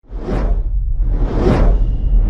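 Cinematic whoosh sound effects of an animated logo intro, starting suddenly out of silence: two swells about a second apart over a deep, steady rumble.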